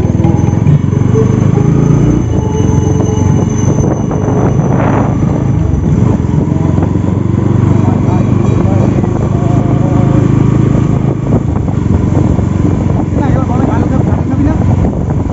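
Bajaj Pulsar NS200's single-cylinder engine running as the bike rolls at low speed, picking up from about 14 to 33 km/h, heard from the rider's seat with wind on the microphone. A voice is heard at times over the engine.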